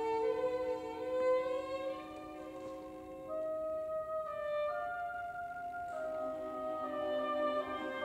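Symphony orchestra playing a slow passage, led by bowed strings with woodwinds: long held chords that move to new notes every second or two.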